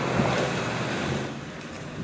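Range Rover Sport SUV driving up on asphalt and slowing to a stop: a rush of tyre and engine noise that fades away over the last second.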